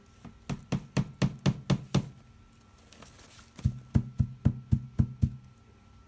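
African grey parrot rapping its beak against a plastic rubbish bin: two quick runs of hollow knocks, about four a second and seven or eight in each run, the second starting a little past the middle.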